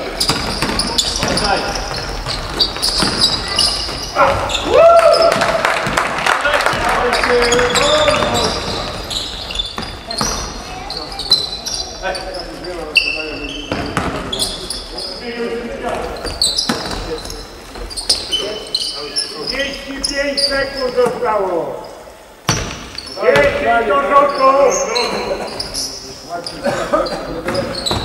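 Basketball game in an echoing sports hall: the ball bouncing repeatedly on the hardwood court amid players' calls and shouts.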